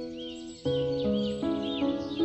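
Slow, soft piano music, with new chords struck about two-thirds of a second in and again near the end. Over it, birds sing a steady run of short, high, curved chirps, about three a second.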